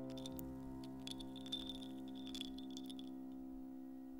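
A piano chord left ringing and slowly fading, with faint scattered clicks and ticks over it.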